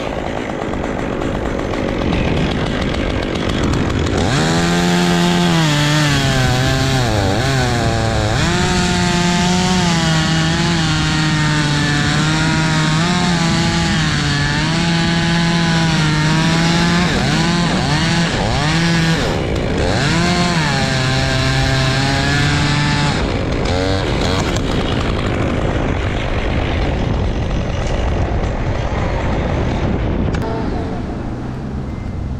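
Top-handle chainsaw cutting through a dead pine trunk: at high revs, its pitch dips and recovers as the chain bogs in the cut, then drops back to a low idle about two-thirds of the way through.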